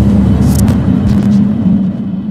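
Logo-intro sound effect: a loud, deep rumble over a steady hum, with brief hissing swishes about half a second and a second in.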